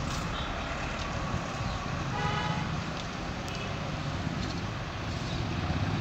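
Steady low rumble of trains on the line, with a short, distant horn blast about two seconds in.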